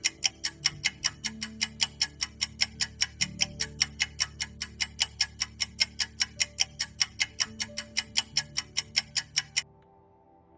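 Clock-style ticking sound effect of a quiz countdown timer, fast and even at about five ticks a second, over soft background music. The ticking stops just before the countdown reaches zero.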